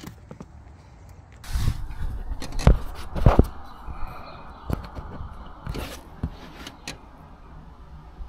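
Hands rustling and scraping as loose dashcam power cables are tidied, irregular handling noise with a couple of sharp knocks about three seconds in, the loudest sounds.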